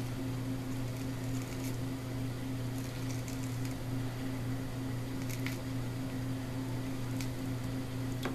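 Orange peel being torn off by hand: a few faint squishy tearing ticks over a steady low hum.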